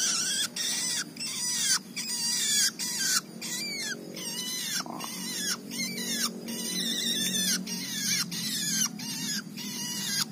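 A young long-tailed shrike (cendet) giving harsh, rasping calls over and over, about two a second, with its beak held wide open.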